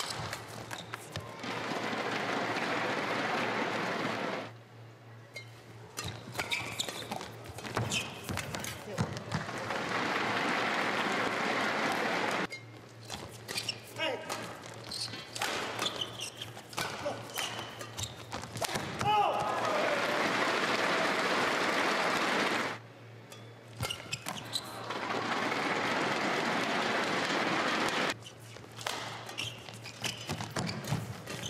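Badminton rallies: sharp racket strikes on the shuttlecock and brief shoe squeaks on the court, broken up four times by about three-second bursts of crowd cheering and applause as points are won.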